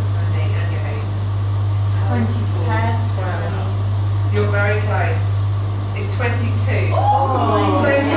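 Several people chatting quietly at a table over a steady low hum.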